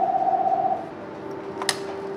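Office desk phone ringing, its electronic ringer giving one steady trilling tone that stops a little under a second in, then a sharp click near the end as the handset is picked up.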